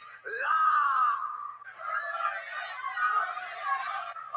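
A young person's drawn-out, wavering wail of exasperation. Its pitch slides up at the start, and it breaks off briefly about halfway before carrying on.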